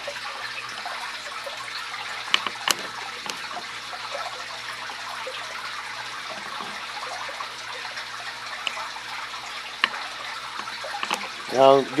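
Steady trickling water from an aquarium's filtration, with a few faint sharp clicks, one about two and a half seconds in and another near ten seconds, over a faint low hum.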